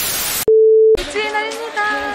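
A video transition sound effect: a short burst of TV static hiss, then a loud, steady single-pitched test-card beep lasting about half a second that cuts off abruptly. A voice starts about a second in.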